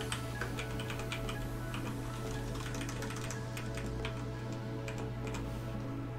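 Typing on a computer keyboard, a run of short irregular clicks, over soft background music.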